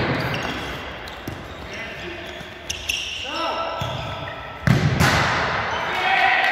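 Indoor futsal play in an echoing sports hall: a ball kicked at the start, short squeaks of sneakers on the court, and players shouting. A loud sudden impact comes a little before five seconds in, with the hall ringing after it.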